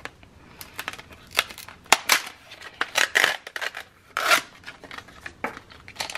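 A plastic blister pack with a card backing being opened by hand: irregular crinkling and tearing bursts mixed with sharp clicks of stiff plastic.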